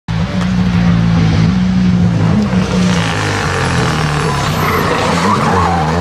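Renault Clio rally car's engine running hard at high revs, with tyre squeal about halfway through.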